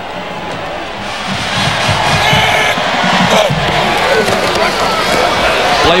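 Stadium crowd noise that swells about a second in and stays loud, with music playing through it.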